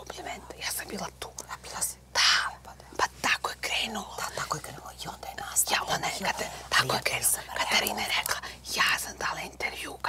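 Two women talking to each other in hushed, whispered voices.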